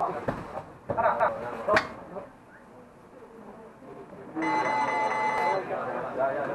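An electronic round timer sounds a steady beep lasting about a second, starting a little past the middle, signalling the end of the round. Earlier there is a shout and a couple of sharp knocks.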